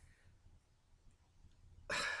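Quiet room tone, then near the end a man's short, breathy exhale, like a sigh.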